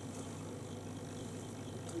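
Steady low background hum with a faint even hiss, and no distinct events.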